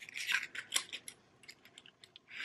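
A gait belt's nylon webbing being pulled through its toothed metal buckle: a quick run of light metallic clicks and rustling in the first second, then a few scattered clicks.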